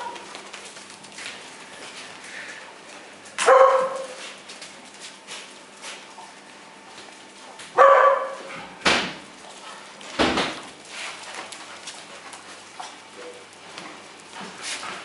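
Brown bear cubs calling: two short cries about four seconds apart, followed by two brief scuffing or knocking noises about a second apart.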